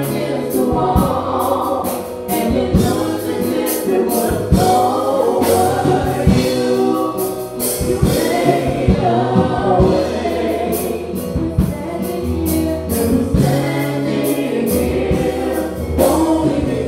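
Live gospel song: a woman's lead vocal through the church PA, backed by keyboard and a drum kit keeping a steady beat.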